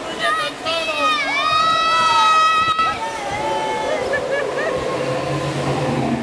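People screaming and squealing, long high-pitched cries in the first few seconds then shorter ones, over the rush and slosh of water on a river-rapids raft ride.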